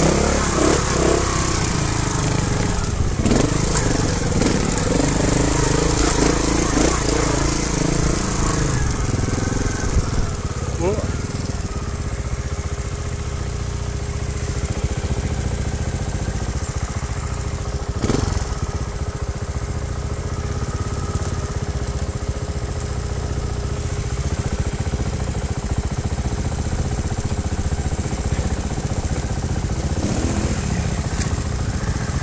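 Trials motorcycle engine revving and blipping on the throttle for the first several seconds while riding a rocky trail, then running steadily at idle.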